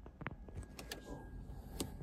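Faint handling noise of a smartphone being grabbed and repositioned: a few scattered light clicks and knocks, the sharpest near the end.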